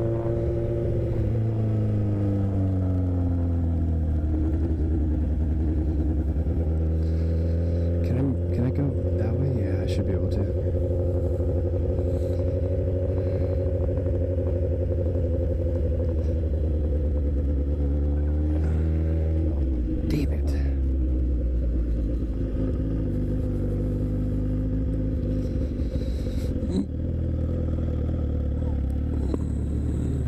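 Honda CBR1000RR inline-four engine running at low revs while the bike rolls slowly. The engine note drops over the first few seconds, then holds steady, with a brief dip and rise in pitch about two-thirds of the way through.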